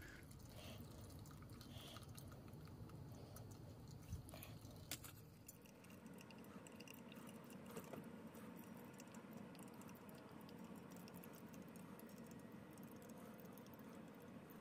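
Near silence: faint dripping of brewed coffee through a pour-over drip bag into a tumbler, with two small clicks about four and five seconds in.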